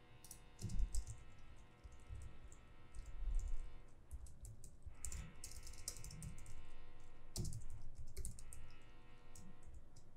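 Typing on a computer keyboard: irregular runs of key clicks with a few heavier thumps.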